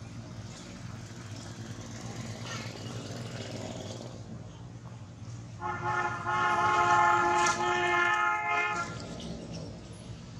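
A vehicle horn sounds one steady, unwavering note for about three seconds, starting a little past halfway, over a low steady hum of traffic or an engine.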